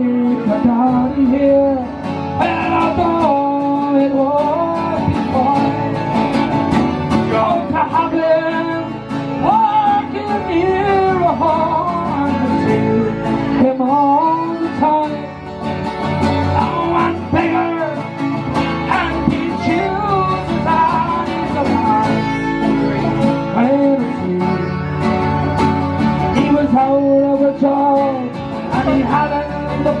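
Live folk song: strummed acoustic guitars and a button accordion, with a man singing the melody.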